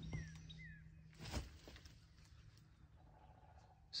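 Near quiet, with two faint, short falling bird chirps within the first second over a faint low hum, and a brief soft sound about a second and a half in.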